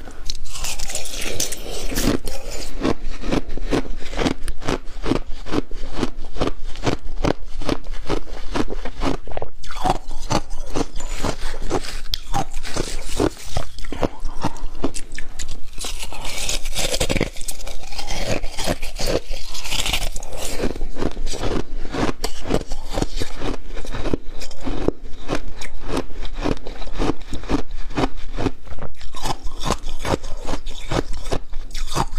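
Close-miked crunching and chewing of frozen slushy ice, a rapid, steady run of crunches from bites of the icy slush.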